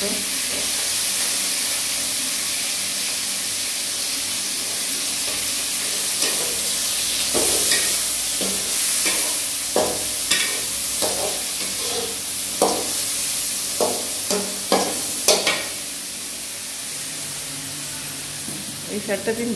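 Food frying and sizzling in a metal kadai while a metal spatula stirs it, scraping and knocking against the pan in a run of sharp strokes from about six seconds in. The sizzling gets quieter in the last couple of seconds.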